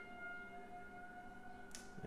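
Faint, steady high tone with a couple of overtones that swells and fades slightly, held through a pause in speech.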